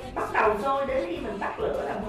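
A woman speaking Vietnamese, with no other sound standing out.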